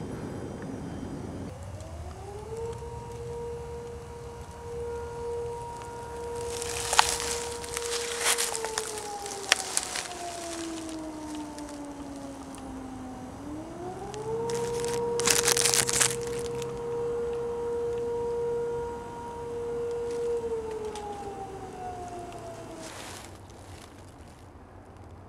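Outdoor warning siren sounding two long wails: each rises in pitch, holds steady for several seconds, then slowly winds down. A few sharp crackles and short bursts of noise come in between.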